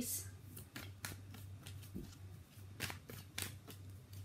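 Tarot cards being shuffled by hand: a run of irregular soft flicks and snaps, with a few sharper ones about three seconds in.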